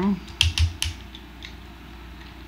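Plastic clicks of a Transformers action figure's parts being unfolded and repositioned by hand: a quick run of sharp clicks in the first second, then quieter handling.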